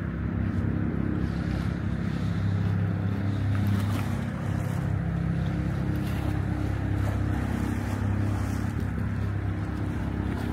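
River water lapping and washing over a stone shore edge, with wind and a steady low engine hum underneath.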